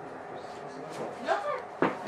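Quiet room tone with a few faint spoken sounds past the middle, and a short sharp click just before the end.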